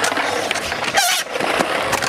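Skateboard wheels rolling on concrete, with the clacks and knocks of the board hitting the ground, and a brief high wavering squeal about a second in.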